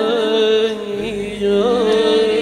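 Unaccompanied voices singing a Persian melody in the Kurdi mode: some hold a steady low drone note while another voice ornaments the tune above it, with a new phrase entering about one and a half seconds in.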